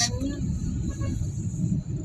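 Steady low rumble of road and engine noise inside a moving vehicle.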